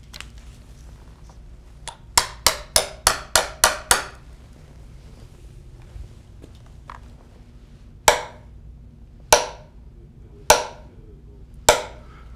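Small hammer striking a steel stress-wave timer probe set in a timber piling. A quick run of about seven taps, roughly four a second, sets the probe about two seconds in; then come four single sharp strikes a little over a second apart, each sending a stress wave across the piling to be timed.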